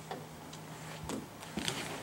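People leafing through Bibles: scattered page rustles and small clicks, heaviest in the second half, over a faint steady low hum.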